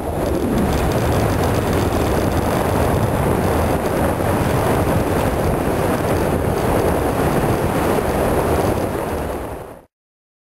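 Wind rushing over the microphone of a handlebar-mounted camera on a moving bicycle, a loud steady roar that cuts off abruptly near the end.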